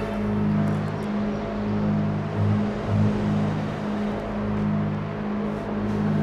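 A steady rush of street traffic noise over low, sustained notes of dramatic background music.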